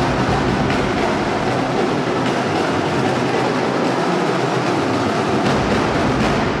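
Drum corps drumming: a dense, rapid stream of snare strokes. The deep bass drums drop out for a couple of seconds in the middle and come back in near the end.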